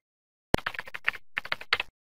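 A sharp click about half a second in, then a quick run of small clicks and taps in a few clusters that cuts off suddenly near the end.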